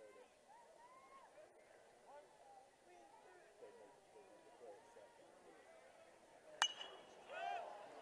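Faint murmur of a ballpark crowd, then about six and a half seconds in a single sharp, ringing ping of a metal baseball bat hitting the ball for a pop-up, followed by a brief rise in crowd voices.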